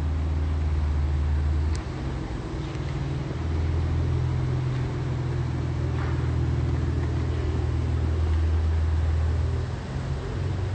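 A low, steady mechanical drone that drops away briefly about two seconds in and again near the end.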